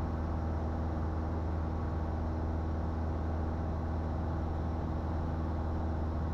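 Cessna 172 Skyhawk's piston engine and propeller droning steadily in cruise, heard from inside the cabin.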